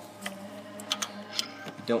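A few light, irregular metallic clicks and taps from a socket and long extension being worked in, then drawn out of, a spark plug tube on a Ford 3.5L DOHC V6 after the plug is snugged down.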